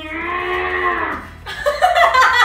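One long, drawn-out bellowing call that holds steady and then falls slightly, lasting about a second and a half. Laughter breaks in near the end.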